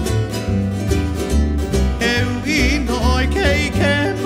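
Hawaiian string-band music: plucked and strummed strings over deep bass notes. About halfway in, a sliding melody line with a wide vibrato comes in on top.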